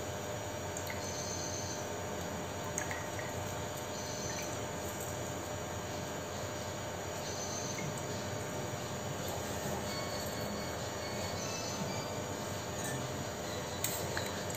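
Steady background hum and hiss with short, faint high-pitched chirps now and then and a couple of faint clicks.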